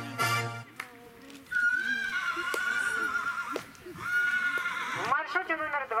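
A horse neighing twice: a long, high call lasting about two seconds, then a second that breaks into falling quavers. Music stops just before the first call.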